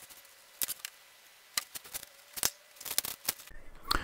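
Scattered sharp clicks and light taps, about a dozen, from hand-measuring and writing at a workbench: a pen on paper and a digital caliper handled against an old carburetor gasket.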